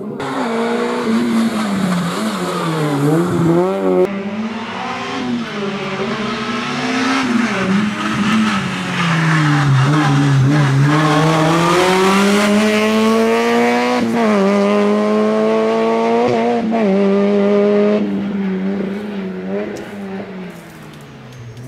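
Slalom car's engine revving hard and easing off as it weaves through cones, the pitch repeatedly climbing and dropping with lifts and gear changes, with tyres squealing.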